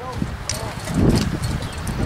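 Distant shouts of lacrosse players carrying across an open field, over wind buffeting the microphone, with a louder gust about a second in.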